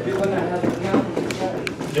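Men talking in Spanish, with several short knocks and clicks from handling in the second half.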